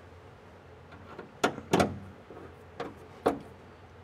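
A few separate knocks and bumps as the fold-down trap door panel of a 1967 Mustang Fastback 2+2 is worked into place in its opening, the loudest two close together about a second and a half in.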